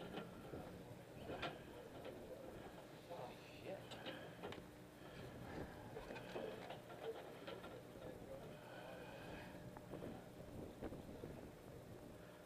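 Faint, indistinct voices in the background over the steady low hum of the boat.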